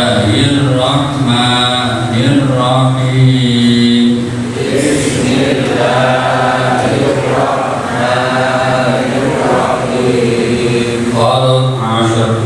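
A man's voice chanting in long, drawn-out melodic phrases through a microphone, with a short break about four and a half seconds in.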